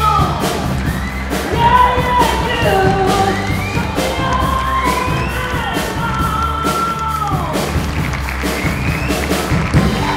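Live band playing, with a male singer's long held sung phrases trailing off downward over electric bass and drums.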